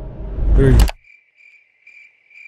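Crickets sound effect, the stock gag for an awkward silence: a thin, high chirping that pulses about twice a second, starting about a second in after the background sound cuts out.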